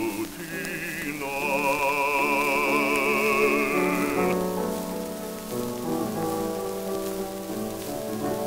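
An operatic baritone with piano accompaniment, on an old electrical 78 rpm record with a light surface crackle. The baritone holds one long note with wide vibrato, which breaks off about four seconds in, and the piano's sustained chords carry on alone.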